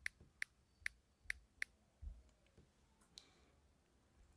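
Faint clicks from a smartphone's on-screen number pad as a mobile number is typed. There are five evenly spaced clicks, a little under half a second apart, over the first second and a half, then a soft low thump about two seconds in and one more click near three seconds.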